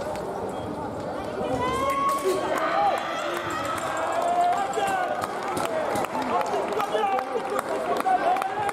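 Several voices calling and talking in a large fencing hall, with scattered sharp clicks and short squeaks throughout.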